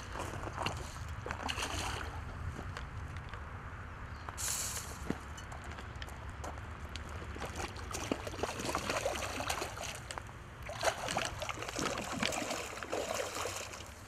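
A hooked carp thrashing at the surface close to the bank: irregular sloshing and splashing of water, busiest in the second half.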